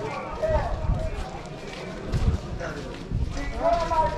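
People's voices talking on a street, with irregular low thumps from walking with the camera.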